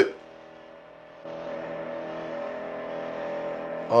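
V8 muscle car engine running hard at speed on a film soundtrack. A steady engine note comes in about a second in, after a quieter stretch.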